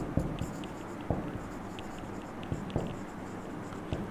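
Marker pen writing on a whiteboard: a run of short scratchy strokes and light taps as words are written out.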